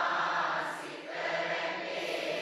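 Many voices chanting Buddhist verses together, blending into one sound that swells twice.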